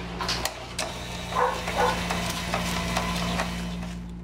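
Steady low electrical hum under scattered light clicks and handling knocks from packing work.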